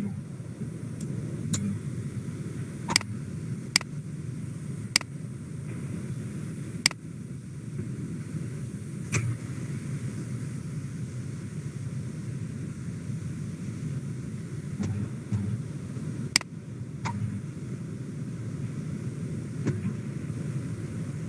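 Computer mouse clicks, about nine short sharp clicks spread across the stretch, most in the first half and two more later on, over a steady low background hum.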